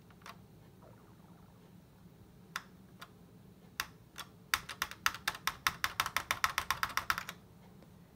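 A plastic key or button clicked by hand: a few single clicks, then a quick run of clicks at about nine a second for nearly three seconds. Repeated attempts to switch on a Macintosh Color Classic that stays dead, with no startup sound from the machine.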